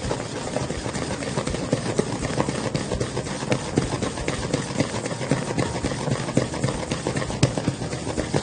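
Wooden spoon beating a cake mixture in a stainless steel bowl: a steady, irregular run of quick knocks and scrapes against the metal.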